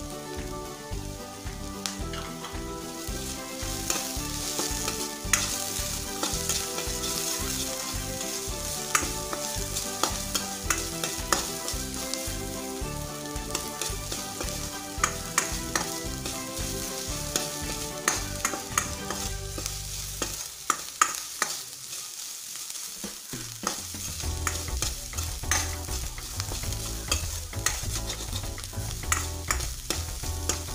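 Chopped green chillies and tempered dal sizzling in hot oil in a stainless steel kadai, stirred with a steel spoon that clicks and scrapes against the pan.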